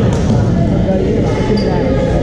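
Echoing sports-hall din: people talking across several badminton courts, with a few short knocks from play.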